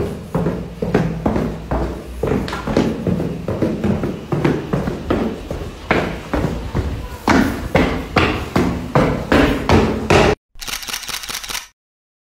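Footsteps going down a stairway, a quick run of knocks and thumps a few tenths of a second apart, with handling noise from the phone carried along. The run breaks off suddenly about ten seconds in, followed by a shorter run of even ticks.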